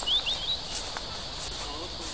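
Tall weeds and brush rustling and crackling as they are pushed aside and trampled underfoot. A steady high insect drone runs underneath, and a bird gives a quick series of short rising chirps in the first half second.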